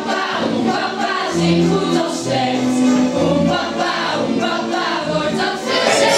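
Music: a group of voices singing together over instrumental accompaniment.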